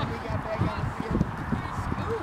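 Lacrosse players and sideline people calling out during play: short, faint shouts, with scattered low thuds throughout.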